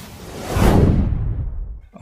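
Whoosh sound effect of an animated logo intro: a deep rush of noise that swells to its peak about half a second in, then fades away.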